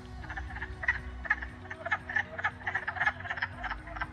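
Wood frogs calling in chorus: a quick run of short calls, about four a second.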